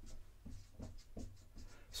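Marker writing on a whiteboard: a quick series of short, faint scratching strokes as words are written.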